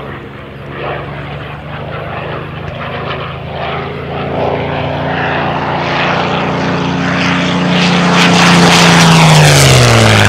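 Supermarine Spitfire Mk IX's Rolls-Royce Merlin V12 engine growing steadily louder as it comes in on a low pass, its pitch dropping sharply near the end as it flies by.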